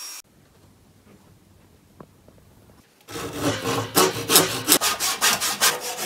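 Hand saw cutting through a bark-covered wooden log in quick back-and-forth strokes, about four a second, starting about three seconds in after a near-quiet stretch.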